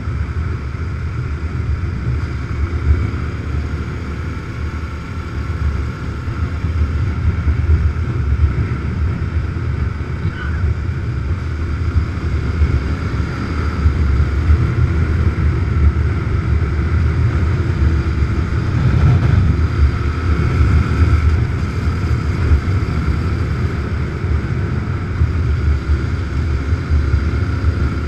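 Dual-sport motorcycle riding at road speed, heard from the rider's position: engine running under a heavy rumble of wind buffeting the microphone, getting somewhat louder about seven seconds in.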